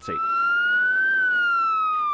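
Emergency vehicle siren wailing: one slow rise in pitch to a peak about halfway through, then a slow fall.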